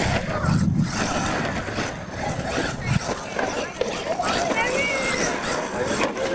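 Radio-controlled monster truck driving over gravel, with the chatter of an onlooking crowd throughout; a short thump about three seconds in.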